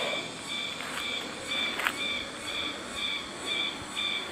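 Forest insects calling: a high-pitched trill that pulses steadily about twice a second, over faint rustling.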